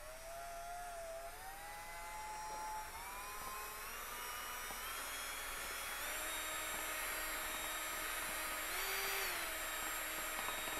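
Cordless drill turning a mixing whisk through smoothing paste and water in a plastic tub. The motor whine starts at once and climbs in pitch in a few steps as the trigger is squeezed further, then dips briefly and recovers near the end.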